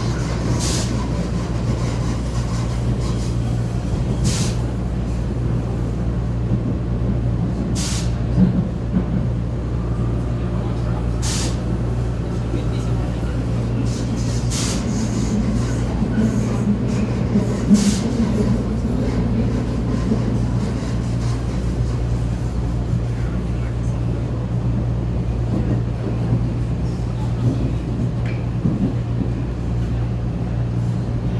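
Vienna U-Bahn U4 train heard from inside the car: a steady low rumble as it runs through the tunnel, with a few sharp clicks spaced a few seconds apart in the first half.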